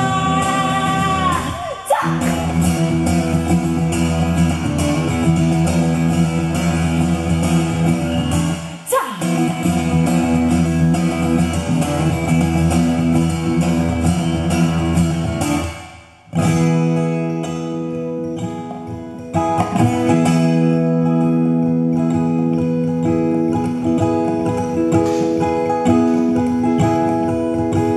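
Acoustic guitar played live: a sung line ends about two seconds in, then an instrumental passage of rhythmic strummed chords. About sixteen seconds in the playing drops out briefly and comes back as slower, ringing chords.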